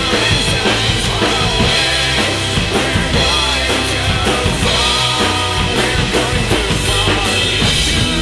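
Yamaha acoustic drum kit played hard, with bass drum, snare and cymbal hits, over a loud recorded rock song.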